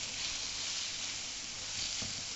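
Grated cabbage sizzling steadily in hot cooking oil in a stainless steel frying pan as it braises down toward golden.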